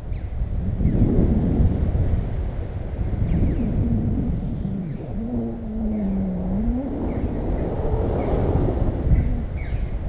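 Airflow buffeting the microphone of a camera held out in the wind during a tandem paraglider flight, a steady low rumble. For a few seconds in the middle a low wavering tone rises above it.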